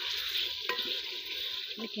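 Chicken pieces and browned onions sizzling in hot oil in an aluminium pot while being stirred with a ladle, with a single sharp knock of the ladle against the pot partway through.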